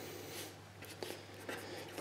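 A pen writing a word on paper: faint scratching strokes with a few small ticks.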